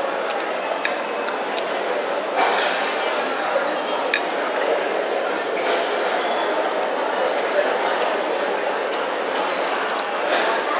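Stainless steel spoon and fork clinking lightly against a plate several times while eating noodles, over steady background chatter of many voices.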